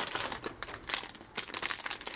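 Plastic wrapping on a bar of soap crinkling as it is picked up and handled, a rapid run of small crackles.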